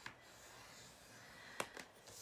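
Faint scraping of a scoring stylus drawn along a cardstock sheet in a scoreboard groove, with a few light clicks, one at the start and two about a second and a half in.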